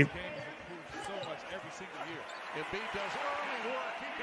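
Basketball game broadcast audio playing quietly: a commentator talking over arena noise, with a basketball bouncing on the court.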